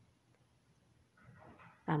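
Near silence: quiet room tone, with a faint, brief hiss-like sound a little past halfway, and then a woman's voice starting at the very end.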